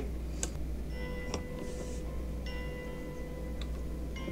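Faint chime-like notes and a few light, irregular clicks over a steady low hum.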